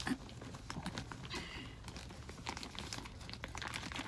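Crinkling of a clear plastic packaging bag, with light clicks as small silicone travel bottles are handled and packed back into it. There is a short burst of rustling about a second and a half in.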